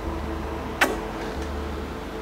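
Soft background music with a steady low pulse, and, about a second in, one sharp kiss smack of the lips.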